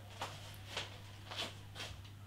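A man sniffing beer aroma from a glass held at his nose: four short sniffs about half a second apart, over a faint steady low hum.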